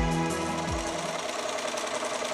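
Sewing machine stitching at speed, a fast even rattle, while background music fades out in the first second.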